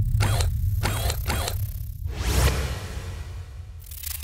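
Designed sound effects for a robot's movements: short mechanical whooshes over a deep rumble, three quick ones in the first second and a half and a longer one about two seconds in. Just before the end a burst of rapid digital glitch crackle starts.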